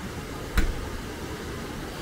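Steady rushing of creek water pouring over and through a bank of dumped rock at a washed-out crossing, with a single sharp knock about half a second in.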